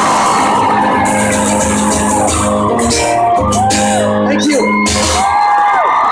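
An acoustic guitar plays the song's closing chords as a crowd cheers and screams over it, with high whoops that rise and fall throughout.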